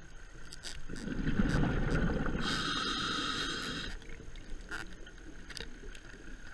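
Scuba diver breathing through a regulator, heard underwater: a low rush of bubbles starts about a second in, then a buzzy hiss of air from about two and a half to four seconds, over faint scattered clicks.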